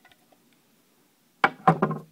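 Two sharp knocks about a quarter second apart near the end: a small TRX 2.5 nitro engine knocked down against a table.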